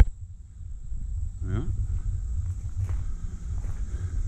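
Outdoor ambience: a steady low rumble on the microphone, a faint, steady, high insect drone, and a few soft footsteps, with a man saying "yeah" once about a second and a half in.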